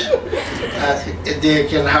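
A man talking into a microphone, mixed with light chuckling at a joke; the speech grows fuller about a second in.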